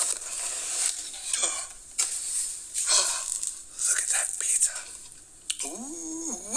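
Cardboard pizza box being opened: a series of dry, hissy rustles and scrapes of the cardboard lid, about four in all.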